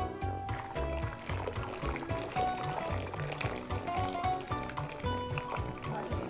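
Pasta being drained: cooking water pouring from the pot through a stainless steel colander, starting about half a second in, under background music with a steady beat.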